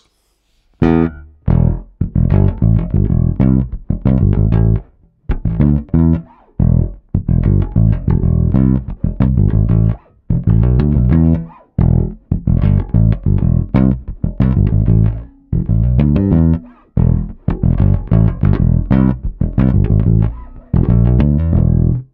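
Harley Benton PJ-5 SBK Deluxe 5-string electric bass played fingerstyle: a P-bass riff of plucked notes in short rhythmic phrases with brief gaps, starting about a second in.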